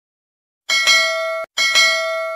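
Notification-bell sound effect of a subscribe-button animation: two bright bell dings a little under a second apart, the first cut off abruptly, the second ringing on and fading.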